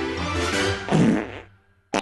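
Upbeat background music, then about a second in a loud, low cartoon fart sound effect that trails off into near silence, cut short by a sudden hit at the very end.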